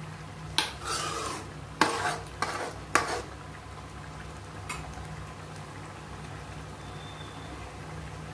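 A metal spoon stirring and scraping in a metal kadai of simmering curry gravy: four or five short strokes in the first three seconds, then one light tap, over a steady low hum.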